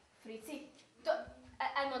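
Speech only: a couple of short voiced sounds, then a woman begins speaking Hungarian near the end.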